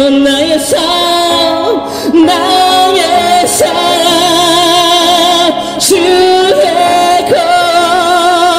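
A man singing a Christian worship song into a microphone, amplified through a portable PA speaker, in long held notes with vibrato.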